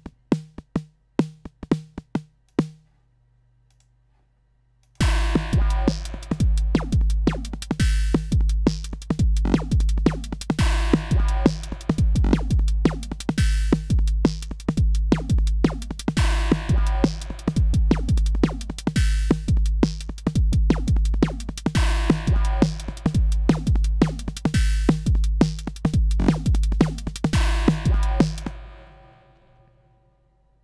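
FXpansion Tremor software drum machine playing synthesized drums: a few single hits at first, then from about five seconds in a fast beat of kick, hi-hats and a synthesized realistic snare at 172 BPM, fading out near the end.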